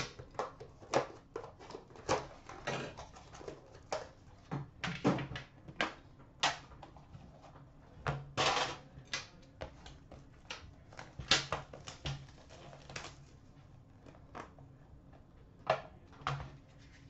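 Hands opening and unpacking an Upper Deck The Cup metal card tin: irregular clicks, taps and knocks of the tin and its lid, with a few short scraping slides, the longest about eight seconds in.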